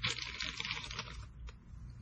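Clear plastic packet crinkling and rustling as a hank of chenille is pulled out of it, the crackle dying down after about a second, with one small click near the middle.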